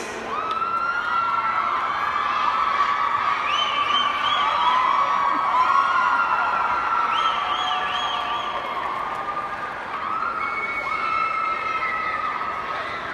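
Rink crowd cheering for a synchronized skating team at the end of its routine, with many high-pitched voices holding long shouts and whoops.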